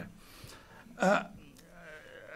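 A brief laugh, one short voiced burst about a second in, against quiet room tone.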